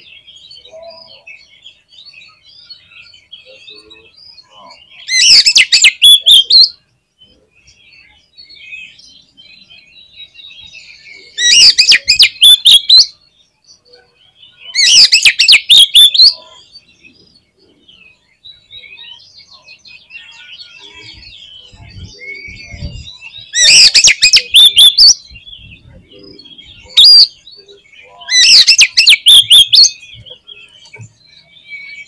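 Oriental magpie-robin (kacer) singing vigorously. There are six loud bursts of rapid notes, each a second or two long and a few seconds apart, with softer twittering in between.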